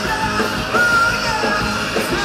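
Live rock band playing: electric guitars, bass and drums, with the lead singer singing into the microphone.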